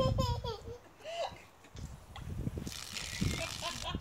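A toddler's short, high-pitched vocal sounds: brief babbles and squeals, with a low rumble on the microphone.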